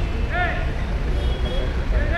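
Street ambience: a steady low traffic rumble with two short rising-and-falling voice-like calls, one just after the start and one at the end.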